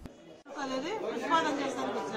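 Speech: a voice talking from about half a second in, after a short quiet gap, with other voices chattering behind it.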